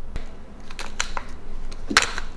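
A scattering of light clicks and taps from handling food and utensils on a kitchen work surface, with the sharpest click near the end.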